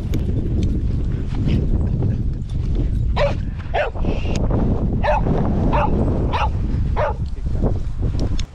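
A dog barking, a run of about seven short barks from about three seconds in, over a steady low rumble.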